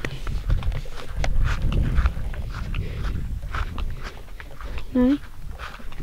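Rustling and knocking from someone moving about on grass, with one short pitched call, rising slightly, about five seconds in.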